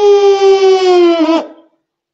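A werewolf howl: one long, loud howl that holds a nearly steady pitch, sagging slightly before it breaks off about one and a half seconds in.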